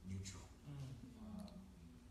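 Quiet, faint male speech with a few small clicks, the voice much softer than the surrounding sermon.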